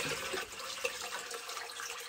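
Water pouring steadily from a plastic bucket into a shallow plastic tub that already holds water, splashing onto the water's surface as the reservoir is topped up.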